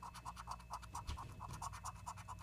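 Scratching the silver coating off a paper lottery scratch-off ticket: quick, even back-and-forth rubbing strokes, several a second.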